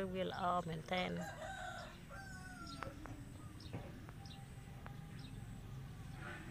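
A long drawn-out bird call in the background, starting about a second in and held for over a second, followed by faint short high chirps and a few light clicks.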